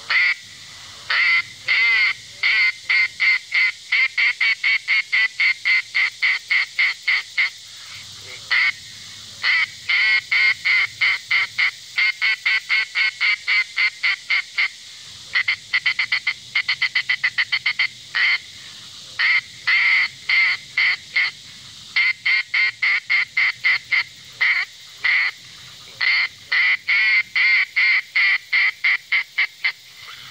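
Custom-made duck call blown in long runs of short quacking notes. Partway through the runs quicken into a fast chatter of notes before settling back into quacks.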